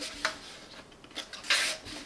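Plastic parts of a Parkside PFS 450 B1 HVLP spray gun rubbing and scraping as the assembled gun is turned over in the hands, with a few faint clicks and one short, louder scrape about one and a half seconds in.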